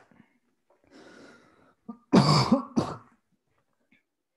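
A person clears their throat: a faint breath, then a loud throaty cough about two seconds in, followed at once by a shorter second burst.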